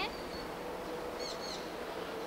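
Quiet outdoor background with a steady hiss, and a bird giving a few short, high chirps a little over a second in.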